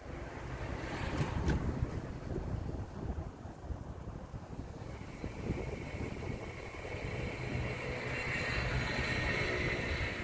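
Wind gusting over the microphone, a rough low rumble that rises and falls. About halfway through a steady high-pitched hum joins it and grows stronger toward the end.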